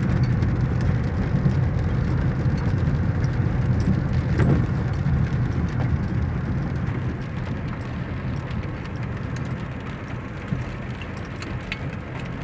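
Car engine and tyre noise on a wet road, heard from inside the cabin: a steady low rumble that eases off somewhat in the second half, with faint light ticks of rain.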